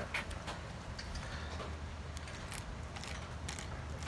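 Knife scraping and working inside a flounder's gutted belly cavity on a wooden table: a few faint, scattered scrapes and clicks over a steady low hum.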